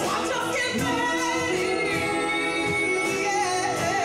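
A woman singing lead over a live band with electric guitars, keyboard and drums, holding long notes and sliding between pitches.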